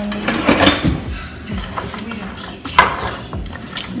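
A cooking utensil knocking and scraping against a metal skillet while food is stirred, with scattered clacks; the sharpest comes near three seconds in.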